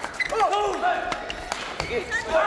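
Badminton rally on a hall court: sharp clicks of rackets striking the shuttlecock, and short squeaks of shoes on the court floor as the players move.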